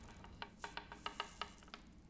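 Small fragments of ground-up glass tinkling as they spill out of a small glass vial onto a wooden tabletop: about a dozen faint, light clinks over a second and a half.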